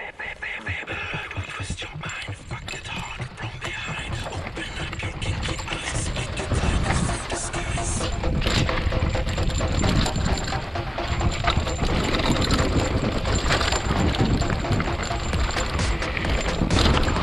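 Hardtail e-mountain bike rattling and clattering as it rolls down a gravel and stone trail: chain, frame and tyres over loose rock. It grows louder as the bike picks up speed.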